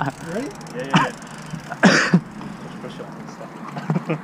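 A man's short, breathy laughs: a few brief bursts, the loudest about two seconds in.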